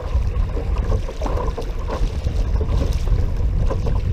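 Water splashing and rushing along a kayak moving under trolling-motor power, with wind buffeting the microphone as a steady low rumble underneath.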